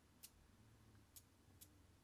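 Near silence: room tone with three faint, short ticks.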